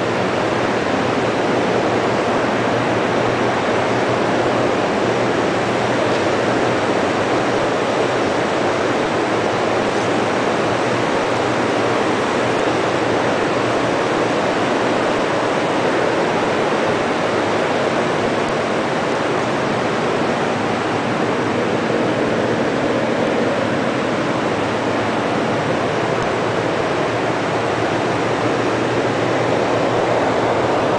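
Steady machinery noise, an even hiss with a faint low hum underneath, unchanging throughout.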